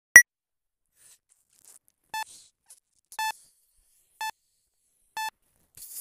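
Electronic beeps: one short high beep at the start, then four lower, evenly pitched beeps about a second apart, followed by a faint swish near the end.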